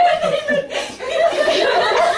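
People laughing and chuckling, mixed with excited voices, with a brief lull just under a second in.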